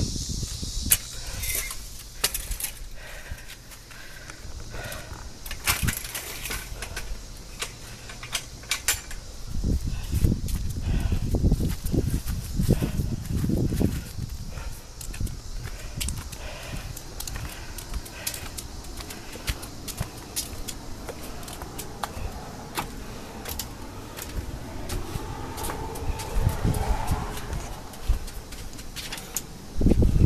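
Footsteps and handling noise from a hand-held phone camera while walking outdoors: scattered clicks and knocks throughout, with a stretch of low rumble about ten seconds in.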